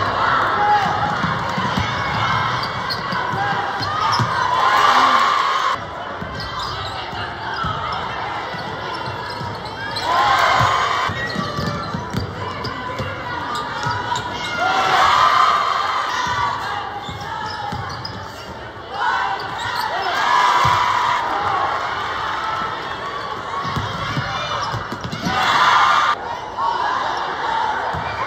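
Basketball game sound in a reverberant gym: a ball being dribbled on the hardwood under the steady noise of a spectator crowd, which rises into cheers several times. The sound changes abruptly in a few places where clips are cut together.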